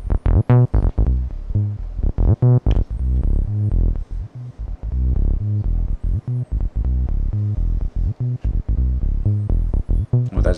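Abstrakt Instruments Avalon Bassline, an analog TB-303 clone, playing a fast sequenced acid bassline of short notes on its sub oscillator, pitched an octave down with the filter resonance turned off. A few notes come out brighter than the rest.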